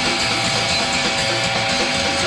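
Heavy rock band playing live: a loud, steady wall of distorted electric guitar over a drum kit, with a repeating low riff.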